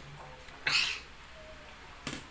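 A short, loud slurp of instant pancit canton noodles being sucked into the mouth, lasting about a third of a second, just over half a second in.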